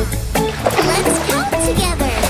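Upbeat children's song backing music with cartoon children's voices, and a water splash sound effect.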